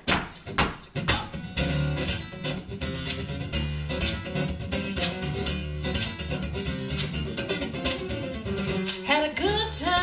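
Live acoustic guitar playing a song intro with a steady beat, after a few sharp knocks in the first second. A woman's singing voice comes in near the end.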